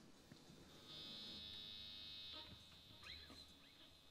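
Near silence with a faint, high electric buzz from the band's amplified gear, starting about a second in and lasting about a second and a half.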